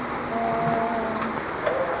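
Steady background hubbub, with one flat, held tone lasting about a second shortly after the start.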